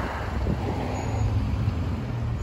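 Outdoor street ambience: a steady low rumble of road traffic, with a faint engine-like hum joining about a second in.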